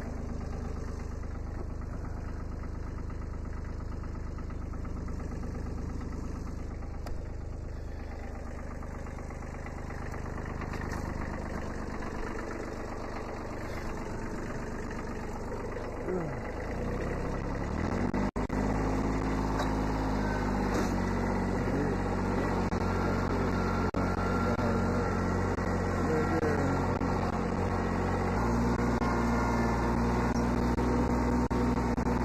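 1981 Kubota B7100's small three-cylinder diesel engine running steadily at idle. About two-thirds of the way in, the engine speeds up and runs louder as the tractor is driven off.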